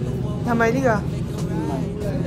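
A woman speaking briefly, twice, over a steady low background hum.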